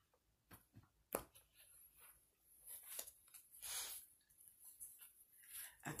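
Faint handling of a deck of tarot cards on a cloth-covered table as the cut piles are gathered back into one deck: a few soft taps, the sharpest a little after a second in, then brief quiet swishes of cards sliding.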